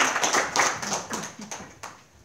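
Congregation applauding, the clapping thinning to a few separate claps and dying away near the end.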